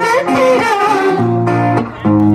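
Live song: an electric guitar plays held chords under a woman's singing. The voice wavers through a melodic turn at the start, the guitar notes then ring on steadily, and the sound dips briefly just before the end.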